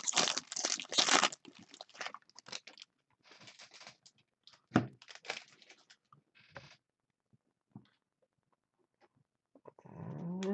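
Foil wrapper of a baseball card pack being torn open and crinkled, loudest in the first second or so, followed by scattered lighter crinkles and clicks as the pack is emptied and the cards are handled.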